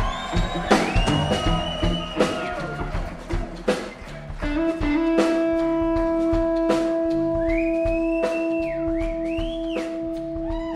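Live electric blues band: electric guitar over a drum kit. The guitar plays gliding, bending notes, then holds one long sustained note from about halfway through while the drums keep time.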